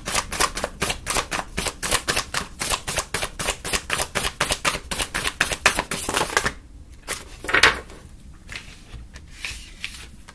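A tarot deck being shuffled by hand: a quick, even run of card-edge flicks, about five or six a second, that stops about six and a half seconds in, followed a second later by one louder knock of the cards.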